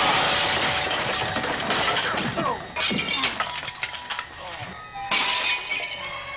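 Glass shattering and crashing, with a loud crash at the start and further crashes with clinking shards around three and five seconds in, amid shouting voices and a film score.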